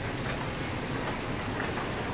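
Steady, even background noise of a shop interior, with no distinct events: room tone.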